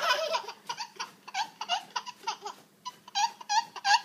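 Toddler laughing in a long string of short, high-pitched bursts, about four a second.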